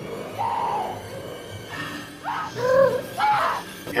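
Tense horror-film soundtrack music, with a woman's frightened, wavering cries in the second half.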